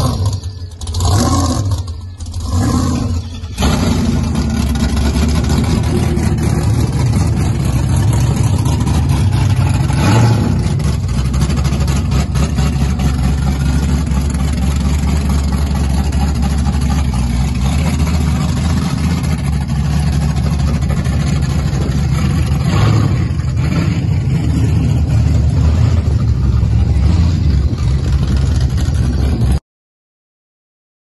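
Loud hot-rod engines running. A few short revs come in the first few seconds, then a steady, deep rumble holds until it cuts off abruptly near the end.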